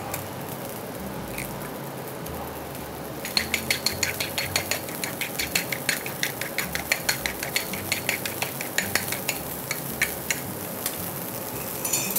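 Eggs being beaten in a small bowl, the utensil clicking rapidly against the bowl's sides from about three seconds in until near the end, over a steady low hiss from the stove.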